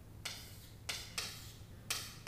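Chalk writing on a chalkboard: about four short scratchy strokes as digits are drawn, over a low steady hum.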